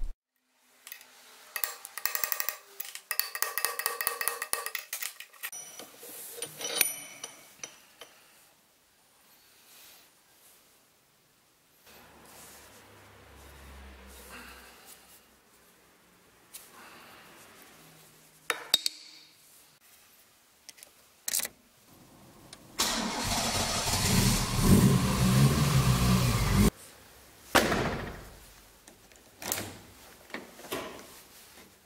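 Plastic hammer tapping repeatedly on a screwdriver handle for several seconds. A few scattered clicks follow, then a car engine cranks and starts, running for about four seconds before it cuts off suddenly.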